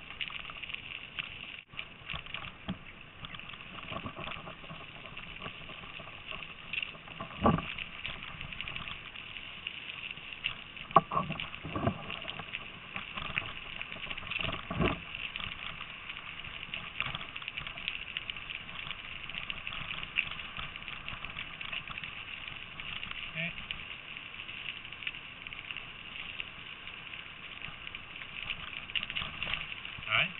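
Bicycle rolling along a gravel trail behind a pulling dog team: steady crunch of tyres on gravel, with a few brief louder bumps.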